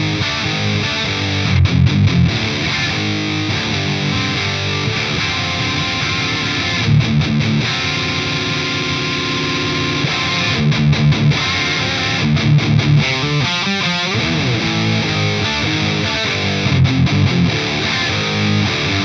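Electric guitar through a Synergy DRECT dual-rectifier-style preamp, played with heavy high-gain distortion. It riffs with bursts of short choppy chugs between held chords, and one chord rings out for a couple of seconds midway.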